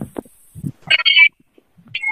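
A few sharp clicks, then a short burst of sound about a second in, coming over a video-call line as a participant's microphone opens.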